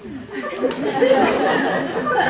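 Speech: people talking in conversation in a hall.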